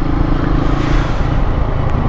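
Motorcycle engine running steadily while the bike is ridden along, under a constant rush of wind and road noise that swells slightly midway.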